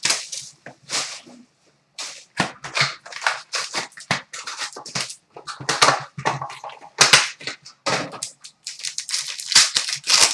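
Trading cards being handled and flicked through by hand: an irregular run of sharp snaps, clicks and rustles of card stock, with cards set down on a glass countertop.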